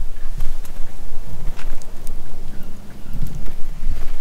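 Wind buffeting the microphone: an uneven low rumble, with a few faint clicks over it.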